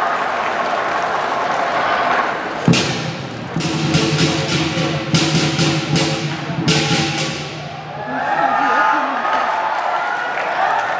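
Lion dance percussion: a heavy drum thud about three seconds in, then rapid crashing cymbal strokes over a low ringing for about four seconds. Crowd voices are heard before and after the percussion.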